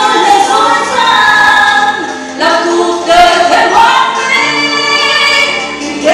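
A woman singing a Vietnamese song live into a handheld microphone with musical accompaniment, holding long notes.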